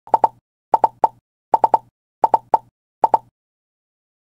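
Short, sharp pop sounds in quick groups of two or three, about a dozen in all, with dead silence between the groups; they stop just after three seconds.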